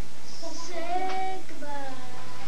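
A child's voice singing a short phrase, with one longer held note in the middle.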